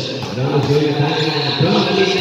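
A man talking continuously, like a game commentator's running call.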